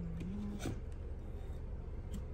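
A brief low hummed voice sound near the start, then a single sharp click about two-thirds of a second in as bottles are handled on a stone countertop, over a steady low hum.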